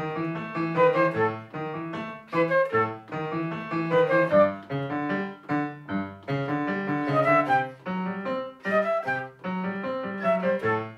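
A concert flute and a digital keyboard with a piano sound playing a short looping tune together: the flute carries the melody over the keyboard's chords and bass notes, in a bouncy rhythm of short notes.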